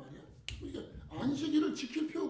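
A man speaking Korean into a handheld microphone in a small room, with one sharp click about half a second in.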